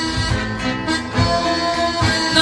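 Milonga band playing a short instrumental passage between sung lines, with held melody notes over a steady accompaniment.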